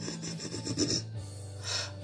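A man's audible breathing between sung lines: a soft rasping, rubbing breath through closed lips, then a quick breath in near the end, ready for the next line.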